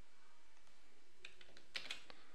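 A few clicks of computer keyboard keys, one about a second in and a couple near the end, over a faint steady hiss.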